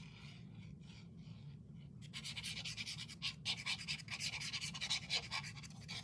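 Tip of a liquid glue bottle scratching and rubbing across paper as glue is spread along the edge. It is faint at first, then becomes a rapid run of scratchy strokes from about two seconds in.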